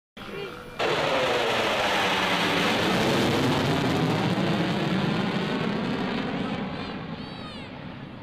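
F-14 Tomcat jet with both engines in afterburner making a low pass: loud jet noise that cuts in suddenly about a second in, with a slow swirling, sweeping character. It fades away over the last couple of seconds.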